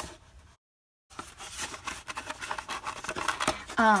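Cardboard of a small Priority Mail flat-rate box being handled and turned over in the hands: a run of scratchy rubbing, flap noises and light taps, starting about a second in after a moment of dead silence.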